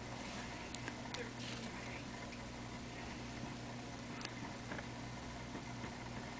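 Quiet room tone with a steady low hum, and a few faint ticks as the needle and thread are pulled through black hex-cut seed beads.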